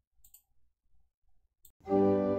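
Near silence with two faint clicks, then organ music starts suddenly just before the end: sustained chords introducing the opening hymn.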